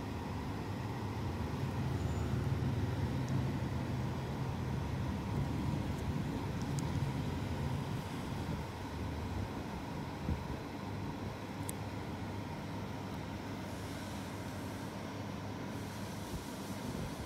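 Steady low rumble of background noise, a little louder over the first half, with a faint steady hum and a couple of faint ticks.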